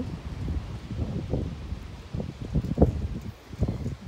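Wind gusting on the microphone: an uneven low rumble with short low thumps.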